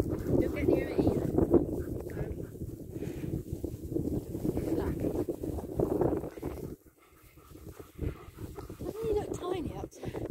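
Dogs playing, with low growling vocal sounds over rustling. It dies down suddenly about seven seconds in, leaving a few brief sounds.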